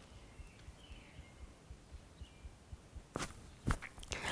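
Quiet room tone in a pause in speech, with faint high chirps about a second in and two short clicks near the end.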